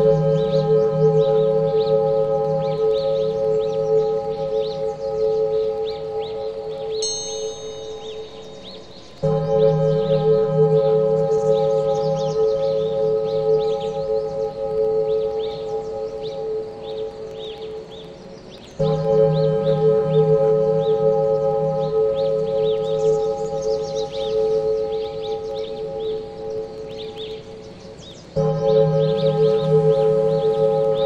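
Meditation music: a deep, bowl-like tone with steady overtones sounds afresh about every nine and a half seconds and fades away before each new stroke. Faint high twittering runs above it, with one brief high chirp about seven seconds in.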